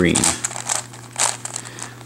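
Layers of a plastic 3x3 Mixup Plus puzzle cube being turned by hand: rasping plastic clicks, with a louder turn about a quarter-second in and another just past a second in.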